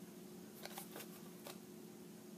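Faint rustling and a few soft ticks of paper cutouts being handled and adjusted by hand, over a steady low hum.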